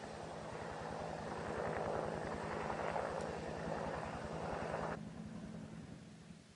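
Steady rushing outdoor noise with a low hum under it, cutting off abruptly about five seconds in.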